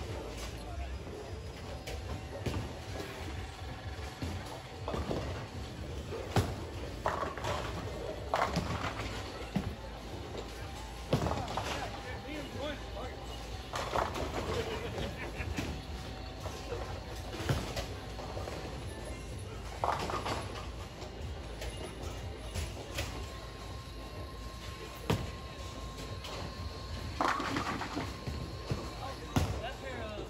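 Bowling alley din: pins clattering every few seconds on the surrounding lanes, over background music and voices.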